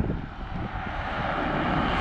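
A car approaching on a wet road, its tyre hiss on the wet asphalt slowly growing louder.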